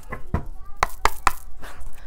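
A deck of tarot cards being handled, giving about four sharp taps or snaps in quick succession.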